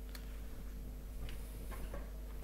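A few faint, scattered keystrokes on a laptop keyboard, short clicks over a steady background hum.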